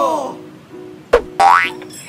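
Cartoon-style sound effects over a light music bed: a bending boing-like glide fades away early on, then a sharp hit about a second in is followed by a quick rising whistle-like glide.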